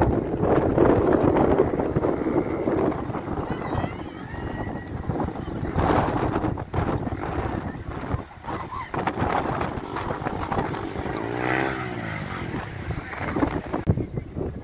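Seafront street ambience: road traffic passing and wind on the microphone, loudest in the first few seconds.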